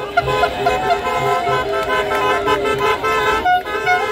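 Car horns honking in a slow-moving celebratory convoy: several horns at once, some held and some in short repeated toots, with a brief break about three and a half seconds in. Music plays underneath.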